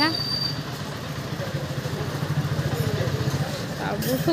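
An engine running steadily at idle, a low hum with a fast, even pulse, with faint voices in the background.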